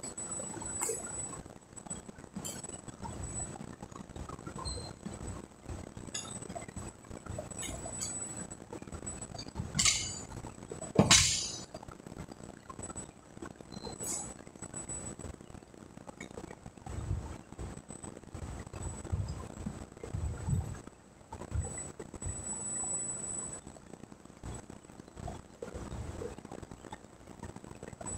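Sharp metallic clanks from a loaded barbell and its iron-hub bumper plates, two of them close together about ten and eleven seconds in, the second the loudest and ringing briefly, with lighter clinks scattered around them.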